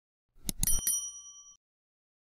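Clicking sound effects, a few quick clicks, then a short bell ding that rings out. It is the notification-bell sound of an animated subscribe button.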